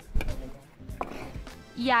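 Background music with a sharp knock just after the start and a lighter knock about a second in, from bakeware being handled on the worktop.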